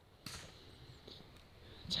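Quiet outdoor ambience with a brief soft rustle about a quarter second in. A man's voice starts speaking at the very end.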